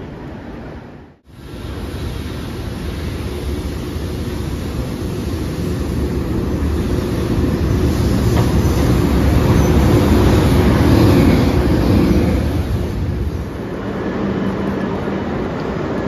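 A JR Freight EH500 electric locomotive running along the platform track. Its rumble builds to a peak about ten seconds in and then eases off.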